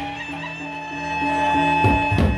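Sasak gendang beleq gamelan ensemble playing: the cymbal crashes pause, leaving steady held tones that swell, and a crash comes back near the end.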